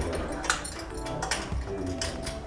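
Background music with a few sharp metallic clicks and taps from elevator car panels being fitted, two of them a little over a second in.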